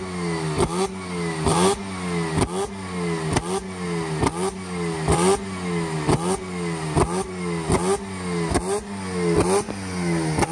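Car engine blipped over and over in quick revs, roughly one to two a second, each rev punctuated by a sharp exhaust pop. It is running a flame tune at a 13.03:1 air-fuel ratio, revving up and dropping back to shoot flames from the exhaust.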